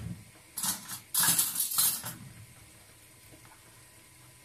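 Metal cutlery rattling as a spoon is taken from a drawer: a short clatter about half a second in, then a longer, louder rattle lasting about a second.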